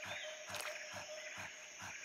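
Faint forest ambience of insects chirping, a steady thin drone with soft pulses about four times a second.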